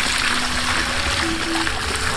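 A strong, steady gush of water pouring from the open end of a PVC siphon pipe, splashing onto the ground and over hands held in the stream.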